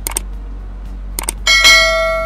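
Subscribe-button sound effect: a pair of quick mouse clicks, another pair about a second later, then a bright bell ding that rings on and slowly fades.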